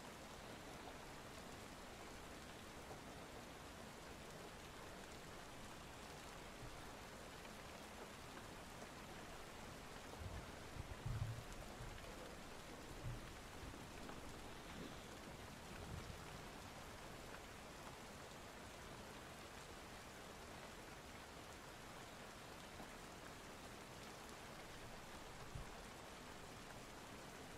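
Steady rain ambience, low in level, with a few soft low thumps near the middle and one near the end.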